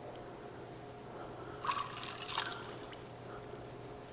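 Orange liqueur poured from a bottle into a metal jigger over a cocktail shaker: a faint trickle of liquid, with a brief louder splash and clink a little under two seconds in.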